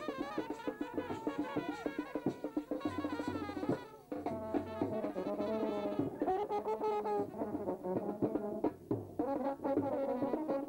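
Brass band playing a melody over drum beats. There is a brief drop about four seconds in, then the horns come back with longer held notes.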